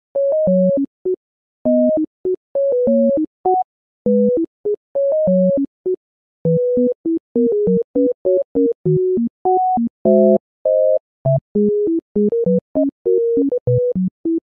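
Background music: a simple electronic melody of short, plain synthesizer notes hopping between low and high pitches in a staccato pattern, with brief pauses between phrases.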